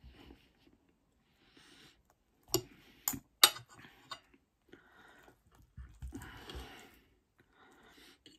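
Close-up eating sounds: chewing and mouth noises, with a few sharp clicks of a metal fork against the plate about two and a half to three and a half seconds in, the last one the loudest.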